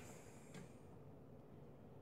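Near silence: faint room tone, with one faint click about half a second in.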